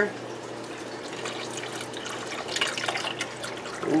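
Tomato juice pouring from a large can into a stainless steel pot of beans and tomato sauce: a steady stream of liquid splashing in.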